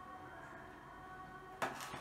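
A quiet stretch with faint, steady background music, then one sharp click about a second and a half in: a metal spoon knocking against the enamel pot of chocolate sauce.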